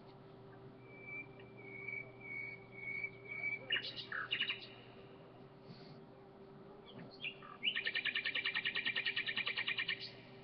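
A bird chirping and singing: thin whistled notes in the first few seconds, a few quick chirps around the middle, then a fast, even trill of about nine notes a second near the end.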